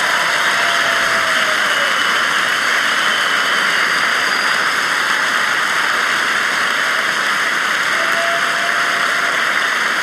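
Large concert audience applauding, a steady, loud wash of clapping.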